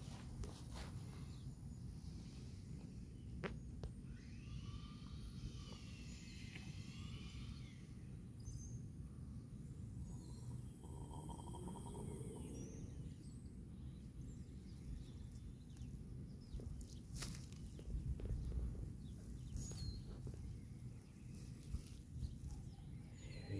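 Faint outdoor ambience: a steady low rumble, with a few short chirping calls, likely birds, about four to seven seconds in.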